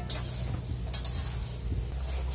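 Hands breaking and handling raw vegetable pieces in a plastic bucket: two short crisp snaps about a second apart, over a steady low hum.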